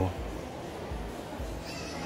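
Low background room noise with a few low rumbling thumps, and a faint, brief wavering high-pitched sound near the end.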